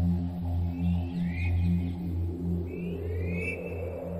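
Ambient electronic background music with a low bass tone pulsing about twice a second. Short high rising chirps come in twice, about a second in and again near the end.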